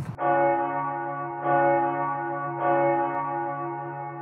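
A bell-like ringing tone, struck three times a little over a second apart, each strike ringing on and fading slowly.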